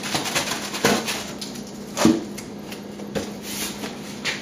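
A price sticker is peeled off a styrofoam cooler and the foam is handled: a run of small crackles and clicks, with a couple of louder knocks about one and two seconds in.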